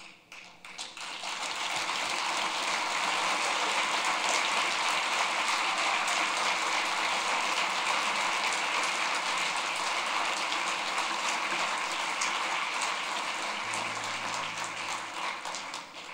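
Audience applauding. The clapping builds over the first second or two, holds steady, and dies away near the end.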